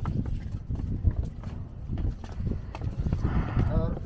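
Footsteps of many people walking down concrete stairs: a steady run of irregular low thuds, with voices talking among the walkers, one voice clearest near the end.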